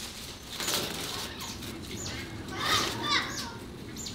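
Leaves and vines rustling as they are pulled off wire fencing, with short, high-pitched animal chirps repeating throughout and a brief flurry of calls about three seconds in.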